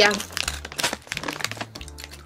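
Plastic gum bag crinkling as it is handled: a quick run of light crackles after a short word.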